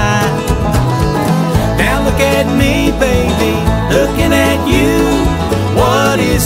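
Bluegrass string band playing an instrumental passage, with no singing: acoustic plucked and bowed strings over a moving bass line.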